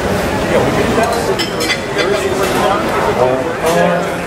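Several people talking at once in a café, with short clinks of tableware now and then.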